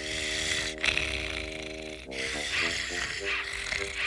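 A hand tool rasping steadily against iron cage bars in long strokes, with short breaks about a second in and halfway, over background music of held chords.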